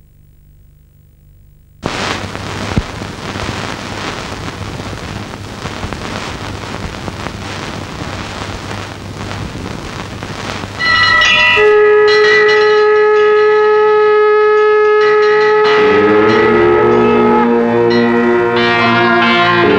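Faint hum, then about two seconds in a sudden steady hiss with crackles from a worn film soundtrack. From about eleven seconds, loud music of long held notes starts, with more, lower notes joining near the end under the production company's logo.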